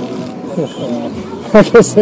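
Men's voices talking, with a loud burst of voice about one and a half seconds in.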